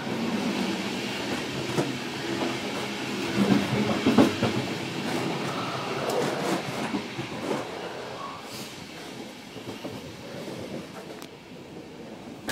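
Running noise of a moving sleeper train heard from inside the coach: wheels and rails rumbling with irregular rattling and clatter, loudest in the first two thirds and easing near the end.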